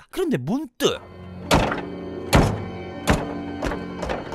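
Tense film score: a sustained low chord with four heavy percussive hits, the first about a second and a half in and the rest roughly every three-quarters of a second. A brief voice comes just before the music starts.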